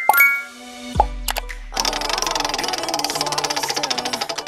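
Prize-wheel spin sound effect: a chime fades out, a plop with a steeply falling pitch comes about a second in, then rapid, even clicking of the spinning wheel runs over bright music.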